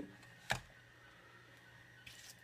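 One short, sharp knock as the Arkbird antenna tracker unit is set down on a laptop, about half a second in, then only quiet room tone with a faint electrical hum.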